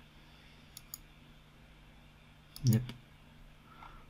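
Faint computer mouse button clicks: a quick pair just under a second in, and a few more a little past two and a half seconds.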